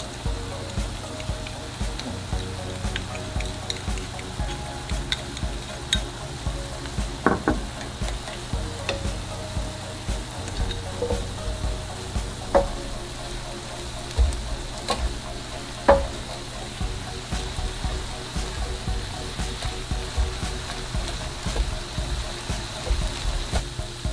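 Ground turkey and onion sizzling in a frying pan while a silicone spoon stirs spices through the meat. A few sharp taps of the utensils on the pan stand out.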